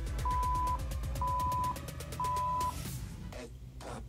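Three short electronic beeps about a second apart, a workout interval timer's countdown to the end of an exercise, over party music with a steady beat that drops out near the end.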